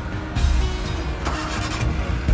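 Background music, with a vehicle engine running under it; a low rumble comes in about half a second in.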